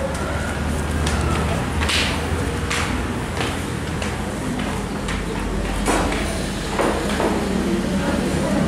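Busy small-restaurant dining-room ambience: a steady low hum under indistinct background voices, with a few scattered sharp clicks and knocks.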